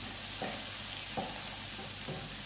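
Shredded vegetables and beef sizzling in a deep nonstick pan over a gas flame while a wooden spatula stirs them, with soft scrapes of the spatula about half a second in and again just past a second.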